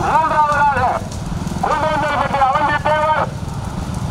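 High-pitched, drawn-out shouted calls from a man's voice, in two long stretches, over a steady low engine and road rumble.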